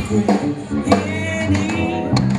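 Live jazz band playing, with electric guitar and drums under a woman's sung vocal.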